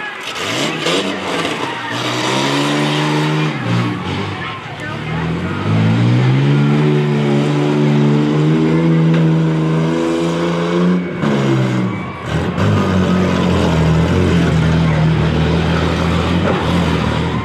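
Demolition derby vehicle's engine revving hard in three long stretches: each time the pitch climbs and holds high for a few seconds before dropping back briefly.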